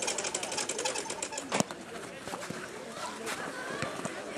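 A football kicked once, a sharp thud about one and a half seconds in, with faint children's voices around it. Before the kick a fast, even ticking rattle dies away.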